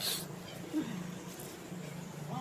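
A macaque gives one short, low call that falls in pitch about three-quarters of a second in, after a brief hiss at the start.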